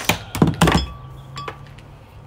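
A few quick clunks and knocks as removed metal jet-ski parts are handled, loudest in the first second.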